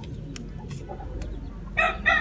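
A rooster starts crowing near the end, a strong steady call. Before it, only a few faint clicks as a plastic basket is handled in the straw.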